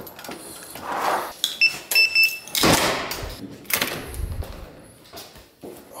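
Building entrance door being opened: a few short electronic beeps, then the door is pushed open and clunks shut, with loud knocks and a rush of noise.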